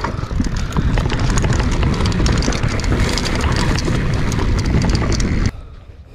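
Mountain bike ridden down a dry dirt trail: tyres rolling over dirt, rapid clicks and rattles from the bike over the bumps, and a low rush of wind on the camera microphone. The noise cuts off about five and a half seconds in as the bike comes to a stop.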